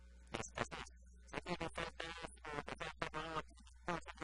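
A man talking in short phrases in Spanish, over a steady low hum.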